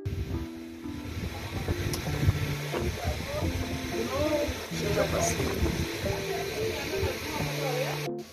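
Background music: a song with a singing voice and held, stepped notes.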